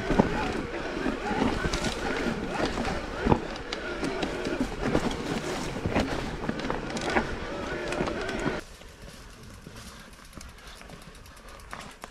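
Mountain bike riding over a rocky, leaf-covered dirt trail: an uneven clatter of tyres on stones and the bike rattling, with wind on the microphone. About eight and a half seconds in it cuts off suddenly to faint outdoor quiet.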